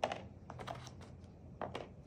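Plastic ping pong balls tapping and clicking against each other and the paper-pulp egg tray as they are picked up and set into its cups: a light click at the start, a couple about half a second in and a couple more near the end.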